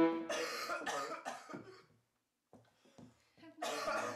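A sick man coughing in harsh fits: four coughs in quick succession, a short pause, then another fit starting near the end. This is the consumptive cough of tuberculosis.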